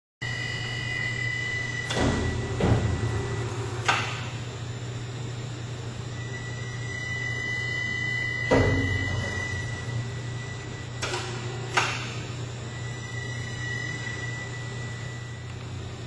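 A heavy steel elevator head section is lowered by hoist onto a shot blast machine, giving off several sharp metal clunks, the loudest about halfway through. Under them runs a steady low hum with a thin high whistle that comes and goes.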